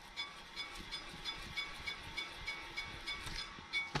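Rear brake rotor of a 2009 Pontiac G6 spun by hand on its hub, turning freely with a faint, even ticking and a light ring, about five or six ticks a second. It rolls smoothly now that a replacement caliper is fitted: the old caliper was binding the rotor so it would not turn.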